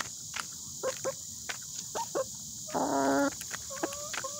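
Hens pecking pellets from a plastic feeder: irregular sharp taps of beaks on feed and plastic. About three seconds in there is a short, loud pitched call lasting about half a second.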